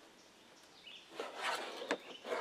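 Faint handling noise as gear is shifted in a plastic kayak: quiet at first, then a few rustles from a little past a second in and a sharp click near the end.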